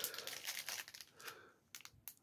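Faint crinkling of a thin clear plastic bag being handled, dying away after about a second and a half, with a couple of light clicks near the end.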